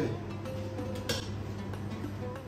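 Background music with a held note, and a single sharp click about a second in.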